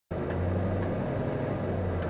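SIN R1 GT4 race car's V8 engine idling steadily, heard from inside the cockpit, with a faint click about a third of a second in.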